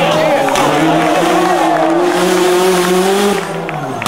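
Citroën DS3 rally car's turbocharged engine pulling hard through a tarmac hairpin, with tyres squealing. Near the end the revs fall sharply as it lifts off, then begin to climb again.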